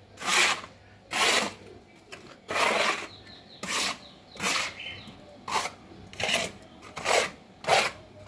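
Small hand broom sweeping leaves and grit across a wet concrete path, a dry swish on each stroke, about eleven strokes at a little over one a second.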